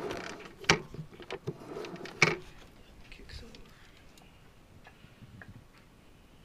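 Mechanical clicks and knocks from a 1982 Honda CT70 mini trail bike being handled around its engine. The two sharpest knocks come under a second in and a little over two seconds in, with lighter ticks after.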